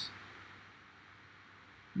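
Near silence: a faint, steady hiss of room tone, with the tail of a spoken word at the very start.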